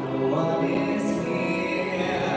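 A singer holding long sung notes into a microphone over live instrumental accompaniment, heard through the venue's PA.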